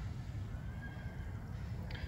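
Outdoor background between words: an uneven low rumble with a few faint, thin high tones above it.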